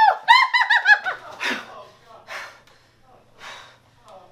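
A woman's high-pitched cackling laugh, a quick run of about six "ha"s in the first second, followed by three breathy gasps spread over the rest.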